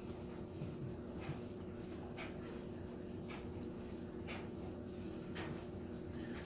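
Paintbrush strokes on the grooved MDF siding of a dollhouse wall, a faint swish about once a second, over a steady low hum.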